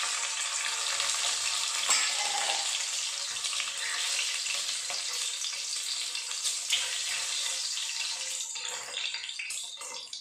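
Whole boiled eggs sizzling steadily in hot oil in a kadai while a metal slotted spoon turns them, with an occasional clink of the spoon against the pan.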